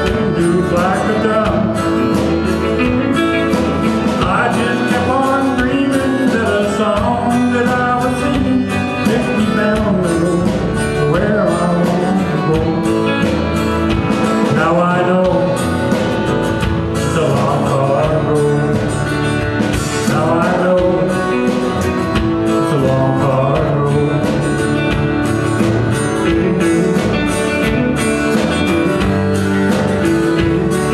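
A live country band playing a song on accordion, acoustic guitars, electric guitar and drums.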